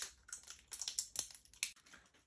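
A plastic slime jar being handled: an irregular run of light clicks and taps as fingers and nails knock against the plastic.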